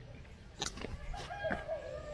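A held animal call of about a second, starting around halfway, with a few sharp footstep clicks on rock.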